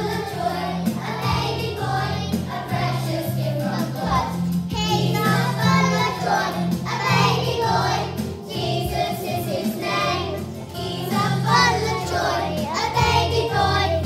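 A group of young children singing a song together over instrumental backing music with a steady bass line.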